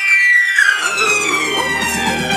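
Electronic dance music with a siren-like synth sweep: the bass drops out for a moment, a high tone glides down, then the bass comes back in under it.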